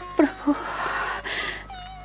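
A person's voice making wordless sounds: a short cry that falls sharply in pitch just after the start, a brief noisy stretch, then a held, slightly wavering note near the end.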